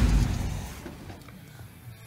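A 1972 Chevrolet C10 pickup's engine being switched off: a sharp click, then the idle dies away over about a second, leaving a quiet shop background.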